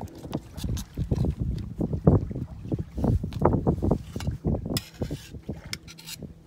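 A metal scraper blade stirring and scraping thick gel coat paste around a clear plastic cup in quick, irregular strokes, mixing the hardener through the paste.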